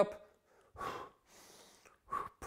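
A man breathing audibly twice while rowing water bottles up and down in a bent-over row: a short breath about a second in, then a fainter, longer one. This is the in-breath and out-breath of the exercise's effort.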